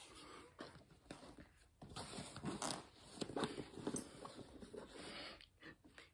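A zipper on a fabric gear pouch being pulled, amid irregular scraping and rustling as items are handled.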